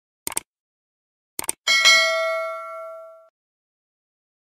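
Subscribe-button animation sound effect: a quick double mouse click, another double click about a second later, then a notification bell ding that rings out and fades over about a second and a half.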